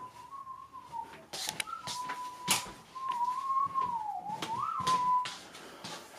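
A person whistling one wavering note for about five seconds, dipping and then rising briefly near the end before stopping, with a few sharp knocks and clicks from things being handled.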